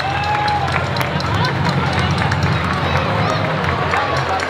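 Hand-held firework fountains on a fire beast and devils' forks spraying sparks with a steady hiss and many sharp crackling pops, over a steady low hum and crowd voices and shouts.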